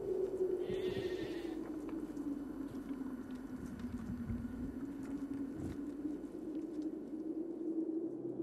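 Scattered footsteps and small knocks on stony ground, over a steady, slightly wavering low hum, with a brief hiss about a second in.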